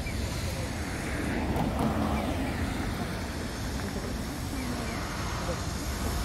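City street traffic noise: cars running and passing, with a swell about one to two seconds in, and faint voices in the background.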